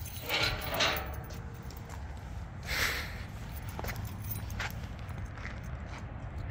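Footsteps on a concrete walkway: a few soft scuffs and faint clicks, over a low steady rumble.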